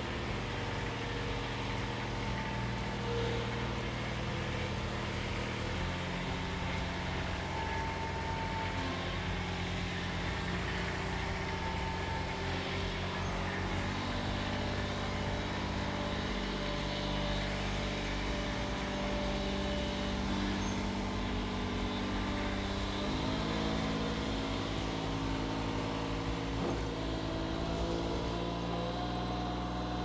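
Engine of a Toro TriFlex triplex greens mower running steadily as the mower is driven off, its pitch shifting in steps several times and rising about two-thirds of the way through.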